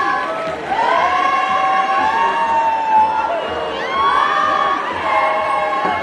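A group of young voices chanting and calling together in long held cries that rise and fall, overlapping one another.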